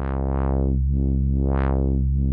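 Low sawtooth synthesizer drone from a Moog oscillator, its filter cutoff driven by the ChaQuO chaos generator. The tone brightens and darkens at uneven intervals, twice in quick succession at the start and once more strongly past the middle: the irregular, non-repeating modulation of a second-order chaos circuit.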